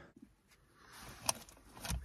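Near silence at first, then faint low background noise with two short, faint clicks, one a little over a second in and one just before the end.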